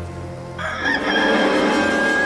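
A rooster crowing once: a long, loud call that starts suddenly about half a second in, over a low music score.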